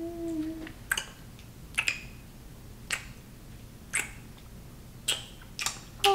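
Repeated kissing smacks of lips on a face: about seven short, sharp smacks, roughly one a second.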